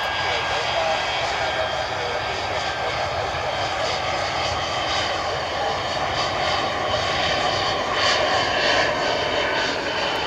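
Saab 37 Viggen's Volvo RM8 turbofan running at taxi power: a steady jet whine with several high tones over a loud rush, swelling slightly near the end.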